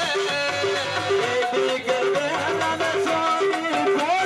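Live Punjabi mahiye folk music, an instrumental passage: a gliding melody over a short note repeated two or three times a second.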